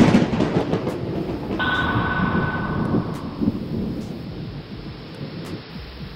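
Intro sound effects: a sudden loud boom followed by a long thunder-like rumble that slowly dies away. A steady high ring comes in about a second and a half in and lasts about a second and a half.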